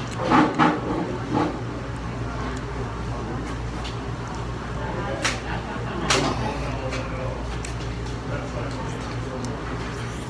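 Close-up eating of a chicken wing: chewing, lip smacks and sharp mouth clicks about five and six seconds in. A brief murmur comes in the first second, all over a steady low hum.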